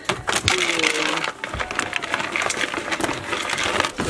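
Dry grain feed and alfalfa pellets rattling and pouring into a bowl as they are scooped and mixed, with the plastic feed bag crinkling: a run of small quick clicks and rustles.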